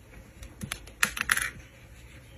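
Close-up handling sounds of crocheting: a metal crochet hook and yarn giving a cluster of light clicks and short scratchy rasps about halfway through as a stitch is worked.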